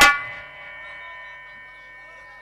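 A single sharp metallic strike that closes the music, then a long ringing that fades quickly and hangs on quietly.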